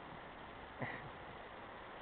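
Faint, steady background noise, with one brief, short sound about a second in.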